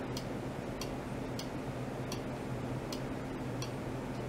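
Pulsed ultrasonic transducer rig on a bench. A steady low electrical hum runs throughout, with a short, sharp light click repeating about every two-thirds of a second, like a clock ticking.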